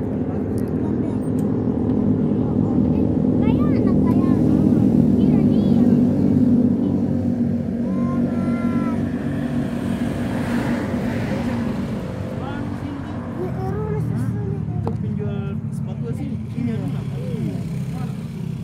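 A motor vehicle engine running steadily at idle, with people talking indistinctly over it.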